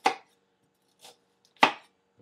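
Chef's knife slicing down through a halved onion and knocking on the cutting board: two sharp chops about a second and a half apart, the second louder, with a faint tap between them.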